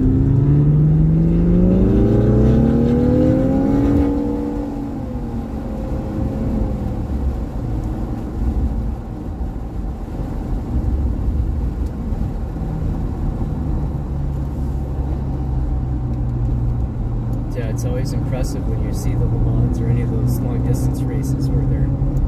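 Sports car engine heard from inside the cabin, pulling hard under acceleration for about four seconds with its pitch climbing, then falling back to a steady drone as the car cruises on. A run of short sharp clicks near the end.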